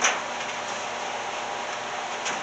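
Steady whir and hiss of running power equipment, with a short knock at the very start.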